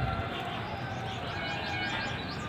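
Small birds chirping: a quick run of short, high chirps in the second half, over a low, steady background rumble.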